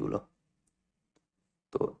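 Faint, sparse clicks of a marker tip tapping a whiteboard while writing, three or four in about a second, between short bits of a man's voice at the start and near the end.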